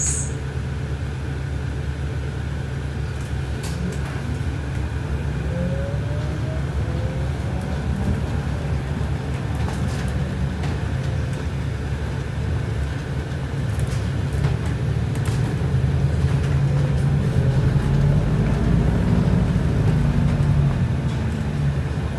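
Inside a moving London bus: the engine and tyres make a steady low rumble that grows louder in the last third. A faint rising whine comes briefly about five seconds in.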